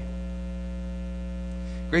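Steady electrical mains hum, a low even drone with a stack of overtones, running unchanged through the pause. A man's voice starts right at the end.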